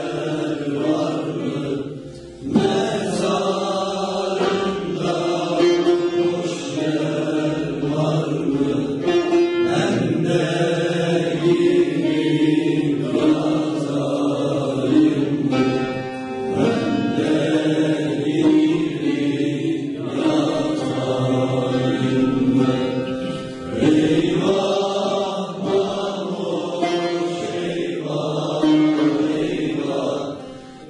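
Youth choir of young men's voices singing together, accompanied by a bağlama (long-necked saz), with short breaks between phrases about two seconds in, around the middle and a little later.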